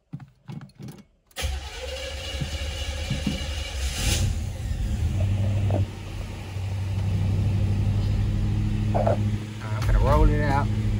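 Box Chevy Caprice engine being started: a few short cranking sounds, then it catches about a second and a half in, flares once around four seconds in and settles into a steady idle.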